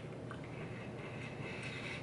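Quiet chewing of a soft, chocolate-filled cookie over a steady hiss of room noise, with one faint click about a third of a second in.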